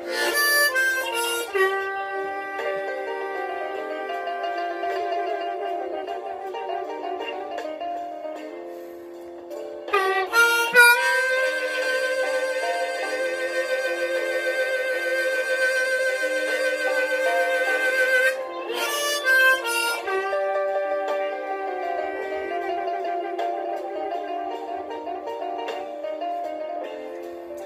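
Diatonic harmonica in B flat played solo in third position: a slow bluesy melody of changing notes. About ten seconds in, a note is scooped up and held with vibrato until about eighteen seconds, then the phrases move on again.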